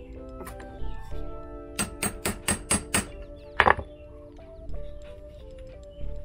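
Hammer blows on a steel rivet-setting punch, flaring the top of a rivet through a kydex knife sheath: a quick run of about six strikes, then one harder blow. Background music plays throughout.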